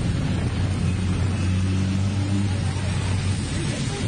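Heavy diesel engine drone of an extraurban bus running alongside a tractor-trailer while trying to overtake, heard from inside the bus with a steady rushing road noise. The low hum eases off near the end.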